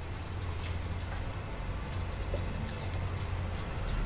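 Pot of pandan water and spices heating on a stove, still short of a full boil. It gives a steady low rumble with a few faint scattered ticks.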